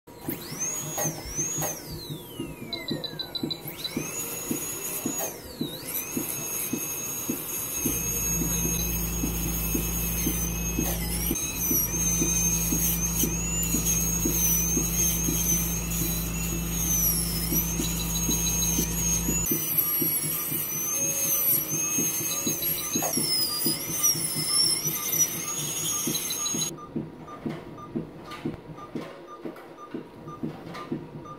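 High-speed veterinary dental handpiece whining as it cuts a cat's teeth during a full-mouth extraction. Its pitch wavers and dips under load, falls away once near the start before it speeds up again, and it stops a few seconds before the end. A steady low hum joins through the middle, and faint regular ticking runs underneath.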